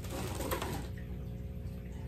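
Steady low hum with a brief faint rustle about half a second in, as long plush dog toys are lifted out of a cardboard box.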